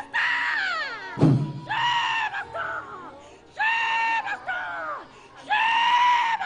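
A woman screaming: four long, high-pitched cries about two seconds apart, each held and then falling away. There is a brief low thump about a second in.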